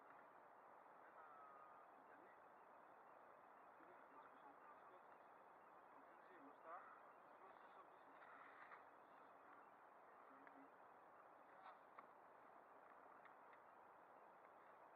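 Near silence: a faint steady hiss with faint, indistinct voices and a few soft clicks near the end.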